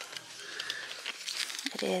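Crinkling and rustling as a silver purse and its paper hang tag are handled. A short spoken word comes at the very end.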